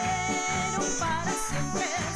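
Live band music with a woman singing a held, wavering note over a steady bass pulse about twice a second.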